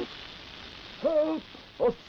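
Steady hiss of water spraying from a hose against a window. A short pitched vocal cry comes about a second in, and another brief one near the end.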